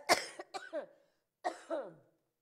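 A woman coughing close on a handheld microphone: a sharp first cough, the loudest, then two weaker coughs, each trailing off in a falling voiced tail.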